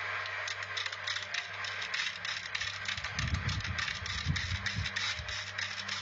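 Wood lathe turning a log for a drum shell while a hand tool cuts into it: a constant rough scraping with a fine crackle of shavings, over a steady motor hum. About three seconds in, irregular low knocks come through for roughly two seconds.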